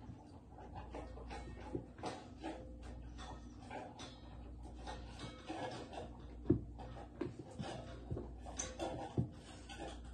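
A puppy panting softly, with small shuffles and a few soft knocks of movement on the floor; two knocks stand out, in the middle and near the end.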